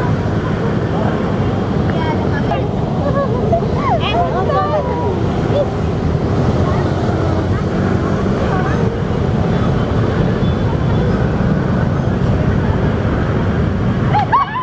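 Steady loud low rumble of wind buffeting the camera microphone outdoors, with faint voices of passers-by coming through a few seconds in.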